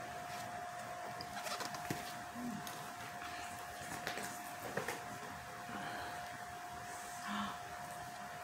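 Quiet room with a faint steady whine. Over it come a few soft clicks and rustles from LP jackets being handled.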